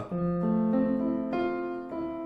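Electronic keyboard with a piano sound playing a slow F major seventh arpeggio. About four notes (F, A, C, E) are struck one after another and left ringing together.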